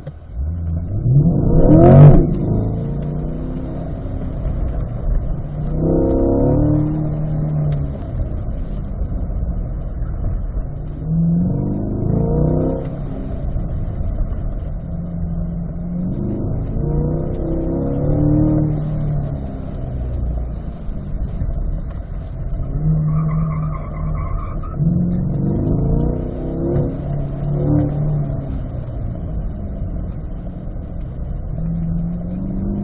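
Chevrolet C8 Corvette's mid-mounted V8, heard from inside the cabin, revving up hard from a standstill, then accelerating and lifting off again and again in second gear through the cone turns, its note rising and falling every few seconds. A short, steady high tone sounds about three-quarters of the way through.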